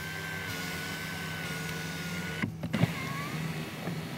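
Electric motor of a Citroën DS3 cabriolet's folding fabric roof whining steadily as the roof retracts. About two and a half seconds in there is a clunk, and the whine then resumes at a lower pitch.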